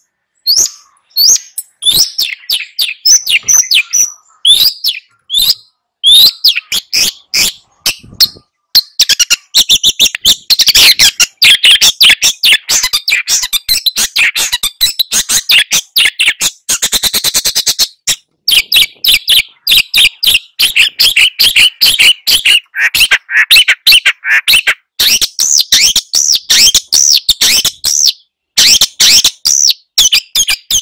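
Long-tailed shrike (cendet) singing a loud, fast, chattering song of short sharp notes. About two-thirds of the way through it breaks into a quick, even rattle.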